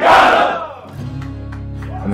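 A football team shouting together in a locker-room huddle: one loud group yell that fades within about a second. A low, steady music bed follows.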